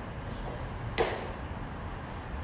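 Low gym room noise with one short, sharp knock about a second in, as the dumbbells are grabbed off the floor.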